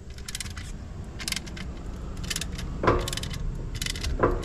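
Ratchet wrench clicking in short bursts, about once a second, as it tightens an X-chock wheel stabiliser between a trailer's tandem tires, with metal clinks and one louder knock near three seconds in.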